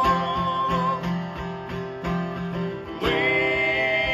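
Live acoustic guitar strumming under voices holding long sung notes. One held note ends about a second in, and a fuller chord of voices comes in about three seconds in.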